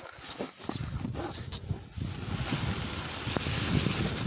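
Wind rumbling on the microphone and the hiss of a snowboard sliding over snow. Both grow louder from about halfway through as the rider picks up speed.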